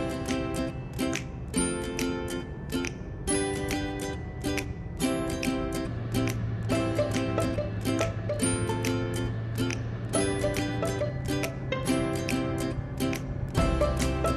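Background music: plucked-string chords repeating in a steady rhythm, about two a second.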